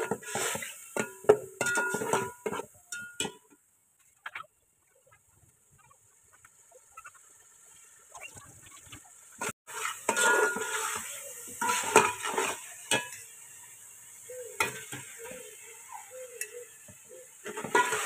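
A metal spoon stirs and scrapes against a stainless steel pot of beef and masala, with the frying food sizzling under it. The scraping comes in bursts, with a quiet stretch of a few seconds in the middle.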